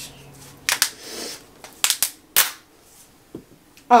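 Sharp plastic clicks and snaps, four or five in the first two and a half seconds, with a brief rustle, as the plastic refill cassette of a Diaper Genie pail is handled and worked. One fainter click comes near the end.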